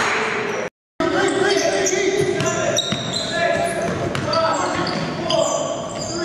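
Live indoor basketball game sound in a gym: the ball bouncing, players' voices, and many short, high sneaker squeaks on the hardwood floor. The sound cuts out completely for a moment just under a second in.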